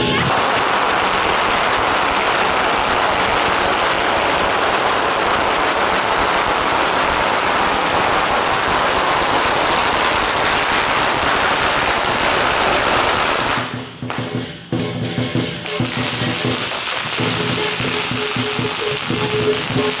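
A long string of firecrackers going off in a rapid, continuous crackle, which cuts off about thirteen seconds in. After a short lull, procession music with steady pitched notes comes back.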